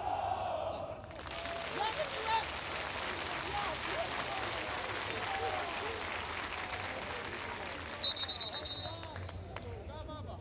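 Football stadium crowd: fans clapping and shouting, rising to a steady wash of noise from about a second in. A short trilling whistle sounds for about a second near the end.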